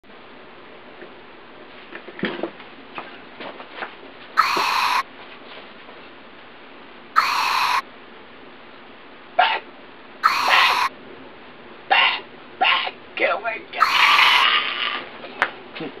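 A man's short grunts and shouts without words, over and over. Four times, each about half a second, a loud, shrill sound effect is laid over them; these are the sounds given to an animated flying skull.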